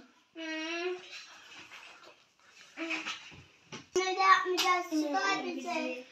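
A young child's voice, talking or half-singing without clear words: a short call about half a second in, a brief sound near the middle, and a longer run of vocalising from about four seconds on.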